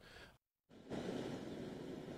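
A brief drop to silence at an edit, then from about a second in a steady, even outdoor background noise.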